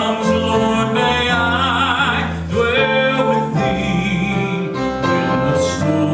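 Male gospel vocal group singing with piano accompaniment, holding long notes over changing chords.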